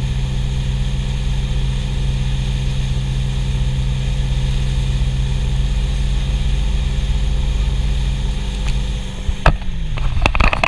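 A wakesurf boat's inboard engine runs steadily under load at surfing speed, over the rushing wash of its wake. Near the end there is a sharp knock and the engine note drops.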